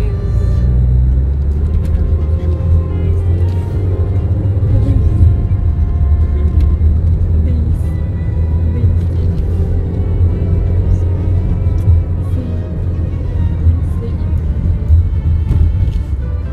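Steady low rumble of a car driving along a road, heard from inside the cabin, with music and a singing voice playing over it throughout.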